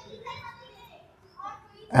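A child's voice, faint and high-pitched, in the background, heard in two short stretches, with the narrator's speech starting right at the end.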